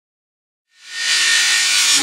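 A rushing whoosh sound effect that swells in out of silence under a second in, holds loud and cuts off abruptly at the end, leading straight into the intro music.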